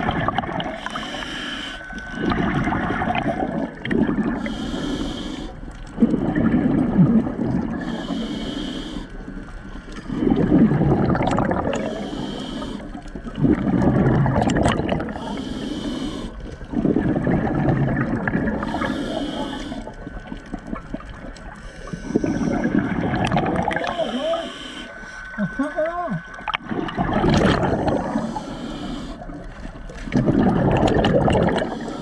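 Scuba diver breathing through a regulator underwater, in a steady cycle about every three to four seconds: a short hiss on each inhale, then a longer, louder gurgling rush of exhaled bubbles.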